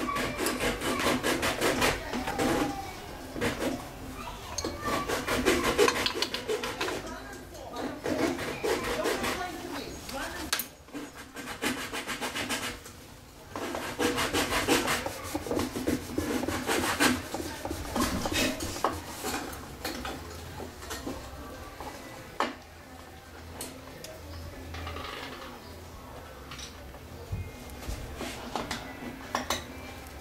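A small glue brush rubbing glue into a crack in the wooden top of an old violin: quick scratchy strokes in spells, busiest in the first half.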